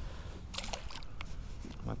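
A small flounder released by hand drops back into the water with a brief splash about half a second in, followed by a few faint clicks.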